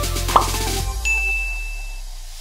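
Background music with a steady beat cuts out about a second in. A single high, steady ding tone then starts and holds for about a second.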